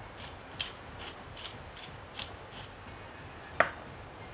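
Hand pepper mill grinding peppercorns: a run of short rasping clicks, about three a second, then a single sharp click near the end.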